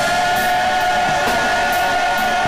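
Live gospel music: one long high note held with a slight waver, over regular cymbal strikes from a drum kit.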